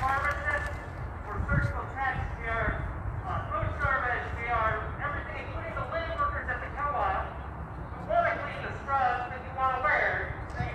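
Indistinct talking, with voices that cannot be made out, over a steady low rumble.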